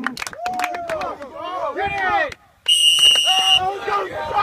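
Players shouting and yelling encouragement. After a short hush about two-thirds of the way in comes one high, steady whistle blast lasting about a second, and then the shouting resumes.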